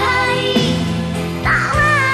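A 1990s Indonesian pop ballad playing: a wavering sung melody over sustained backing notes.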